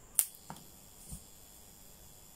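A sharp click as a metal alligator clip snaps on to connect the 12 V supply, followed by two softer clicks about a third of a second and a second later.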